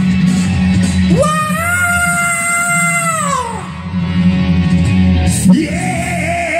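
Hard rock backing track with a man's loud yelled vocal: he slides up into one long held note about a second in, holds it for about two seconds, then lets it fall away, and starts singing again near the end.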